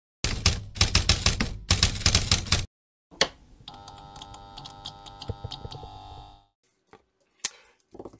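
Intro sound effect over the title card: a fast run of sharp key-like clicks, like typing, for about two and a half seconds, then after a short gap a single click and a held ringing chord with faint clicks in it that dies away about six and a half seconds in.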